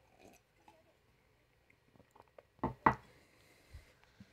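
A man drinking water from a glass: faint sipping and mouth sounds, then two short, louder knocks close together a little under three seconds in.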